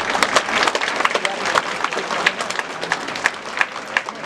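An audience applauding: many people's hand claps overlapping irregularly, with a few voices among them.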